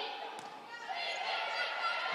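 Volleyball rally in an indoor arena: a sharp hit of the ball about half a second in, with crowd noise dipping and then rising again from about a second in.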